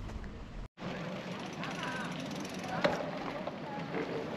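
Street ambience while riding slowly through a crowd of pedestrians: passers-by talking and a steady background hum, with one sharp click just before the middle. The sound drops out briefly just under a second in.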